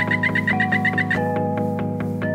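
Background music: sustained synth chords over a steady beat, with a quick run of repeated high notes that stops a little after a second in.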